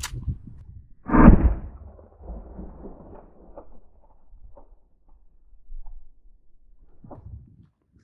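Mosin Nagant rifle shot (7.62x54R) replayed slowed down: one deep, muffled boom about a second in, followed by a low rumble that fades away over a few seconds.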